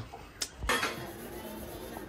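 Dishes and metal pots being handled during washing up by hand, with a single sharp clink about half a second in and a steady background of handling and water after it.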